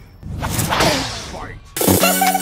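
Fighting-game-style announcer voice calling the round, over a loud whooshing transition effect. Dance music cuts in abruptly near the end.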